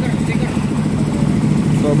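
An engine running steadily, a low even drone, with voices faintly behind it.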